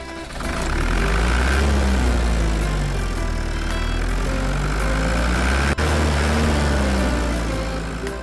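Tractor engine sound effect: an engine running with a deep rumble, its pitch slowly rising and falling as it revs. It breaks off briefly about three-quarters of the way through.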